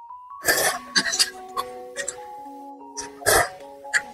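Noodles slurped from a chili broth, with two loud slurps about half a second in and again a little after three seconds, and small wet mouth clicks between them. Background music with a slow melody plays underneath.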